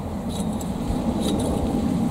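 Long-handled edging shears snipping a grass edge: two sharp metallic chinks about a second apart, over a steady low rumble.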